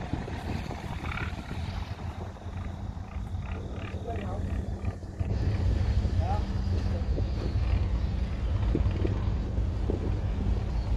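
A boat engine running with a low, steady rumble, growing louder about halfway through, with wind buffeting the microphone.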